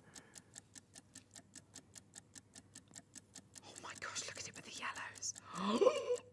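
Countdown-clock ticking sound effect, a steady tick about four times a second, marking a timer running down. Quiet speech comes in over it near the end.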